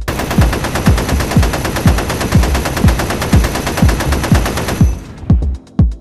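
Sustained rapid-fire gunshot sound effect that stops about five seconds in, laid over electronic dance music with a steady kick-drum beat.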